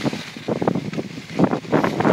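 Wind buffeting the microphone of a camera carried by a skier, mixed with the irregular scraping of skis on hard groomed snow.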